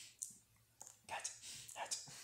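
A person whispering short syllables faintly, several in quick succession, with clicky, hissing consonants.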